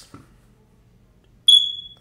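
Quiet, then about a second and a half in a single high-pitched electronic beep that starts sharply and fades out over about half a second. It is one of a recurring beeping.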